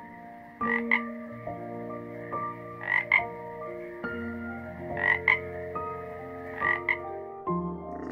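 A frog croaking: four short calls, each a quick double note, about two seconds apart, over faint steady tones.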